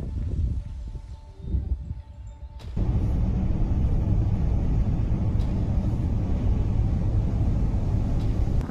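Steady, dense low rumble from an outdoor field recording of an approaching dust storm. It starts abruptly about three seconds in, after a quieter, patchier rumble.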